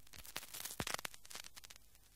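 Faint, irregular crackling clicks over a low scratchy hiss, with no steady rhythm.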